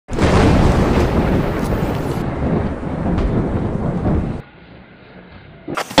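A loud, rough rumbling noise that cuts off abruptly about four and a half seconds in, followed by a quieter low hum.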